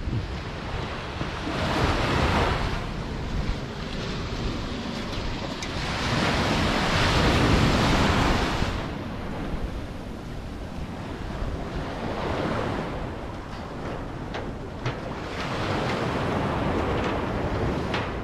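Wind buffeting the microphone over the wash of small surf breaking on a beach. It swells and eases several times and is loudest around the middle.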